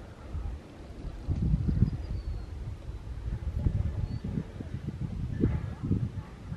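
Wind buffeting the microphone on an open chairlift: an irregular low rumble in gusts that picks up about a second and a half in.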